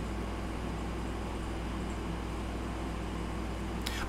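Steady background hum and hiss in a pause between speakers, with no other sound events.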